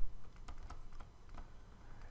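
Faint, irregular light clicks of a stylus tapping and sliding on a pen tablet as a word is handwritten, over a low steady hum.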